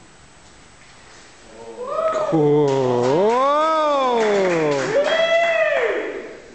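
A man's voice calling out loudly in one long, drawn-out call whose pitch rises and falls slowly, then a shorter second part near the end: the karate leader announcing the kata before beginning it.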